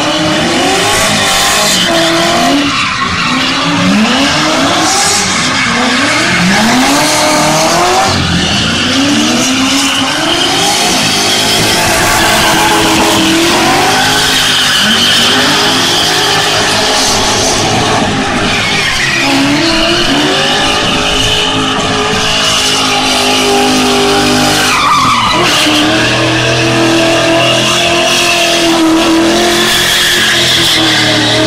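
BMW drift cars sliding through a drift, tyres squealing continuously. Engines rev up and down in quick repeated surges for the first half, then are held at high, steadier revs.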